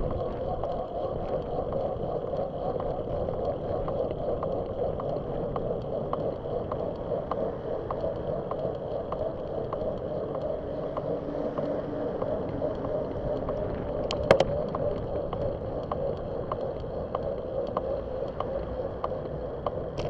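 Riding noise on a moving bicycle's camera: steady wind and road noise, with light ticks repeating about every half second and one sharp click about fourteen seconds in.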